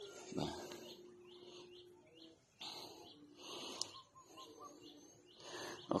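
Birds chirping faintly, short calls repeating every second or so, with a quick run of short notes about four seconds in. A brief low thump comes about half a second in.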